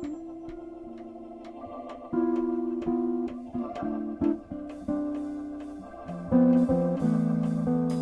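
Live jazz trio playing: Hammond B-3 organ sustaining and changing chords over electric bass notes, with light, evenly spaced drum and cymbal hits. The music gets louder about two seconds in and again near the end.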